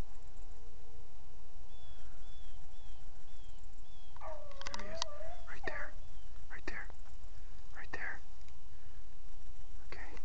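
Beagles baying on a rabbit's track: one drawn-out, wavering bawl about four seconds in, followed by two short yelps, over a steady low rumble. A few faint high chirps come earlier.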